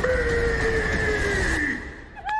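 Mojo Jojo's long drawn-out scream, voiced by Roger L. Jackson, held on one note that slowly sinks in pitch over a steady noisy rumble. It fades out near the end.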